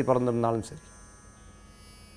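A man's voice for about half a second, then a faint steady electrical hum and buzz in the recording.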